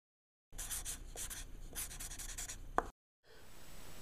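Faint scratching of a pen writing on paper in short groups of strokes, with a single sharp tap near the end.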